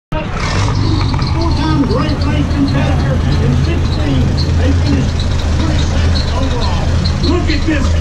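Huge 900-cubic-inch six-cylinder engine of a 1918 boat-tail race car running slowly at a steady low note, with voices around it.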